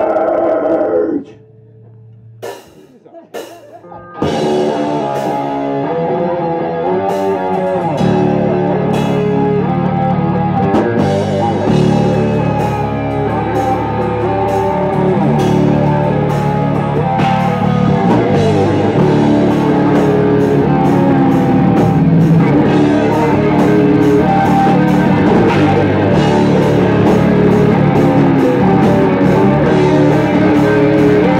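A death/thrash metal band starting a song live: after a brief loud shout and a few clicks, an electric guitar riff comes in at about four seconds, and the drums and bass join at about eight seconds, playing fast and loud from then on.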